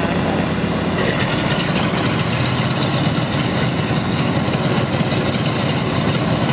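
Boeing B-17's Wright R-1820 Cyclone radial piston engines idling on the ramp: a steady, rough low rumble made of fast firing pulses. The bomber is partway through its engine start, with not all four engines yet running.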